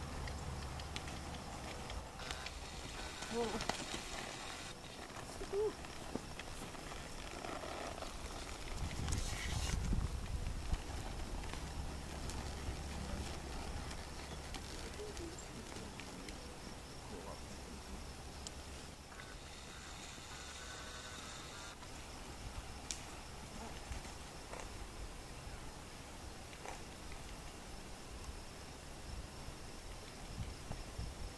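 Quiet outdoor ambience with faint, scattered hoofbeats of a quarter horse moving on soft arena dirt, and a short laugh about six seconds in.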